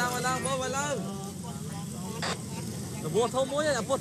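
People talking in Khmer at a roadside, over a steady low hum of road traffic and engines. One short sharp click a little after two seconds in.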